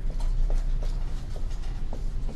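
A run of light, sharp taps or clicks, about three a second and a little uneven, over a steady low hum.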